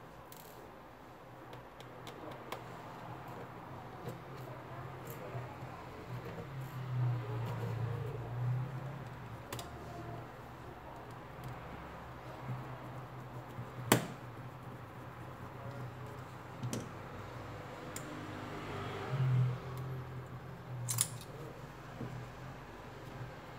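Small clicks and taps of a thin metal pick, a screwdriver and the tablet's plastic and metal parts being handled on a silicone repair mat, with one sharper click about two-thirds of the way through and a couple more near the end. A low steady hum runs underneath.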